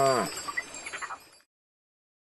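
The end of a cow's long, low moo, dropping in pitch, followed by a few bird chirps. The sound then cuts off to silence about one and a half seconds in.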